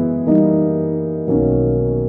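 Slow, calm piano music: a chord struck about a third of a second in and another just past a second in, each left ringing and slowly fading.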